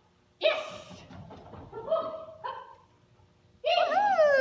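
Dog barking during an agility run: a loud sharp bark about half a second in, then two shorter barks around two and two and a half seconds. A loud high voice sliding up and down in pitch begins near the end.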